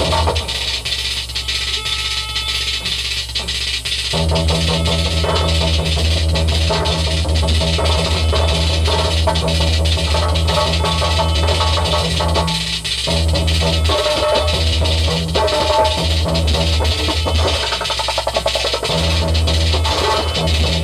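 Live electronic music with a steady beat, played from a laptop and hardware controller. The heavy bass drops out for the first few seconds and comes back about four seconds in, then cuts out briefly twice more.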